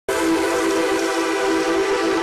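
The opening sting of a TV show's logo ident: one steady, held tone rich in overtones that starts abruptly.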